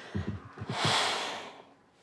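Close breathing during a kiss: a few short low murmurs, then one long breathy exhale about half a second in that fades out.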